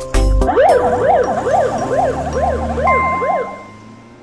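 Ambulance siren wailing quickly up and down, about two sweeps a second, after a brief tail of music. It fades away towards the end, while a steady high tone joins about three seconds in.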